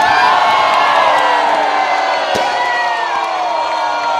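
Large crowd cheering, whooping and screaming, many voices at once.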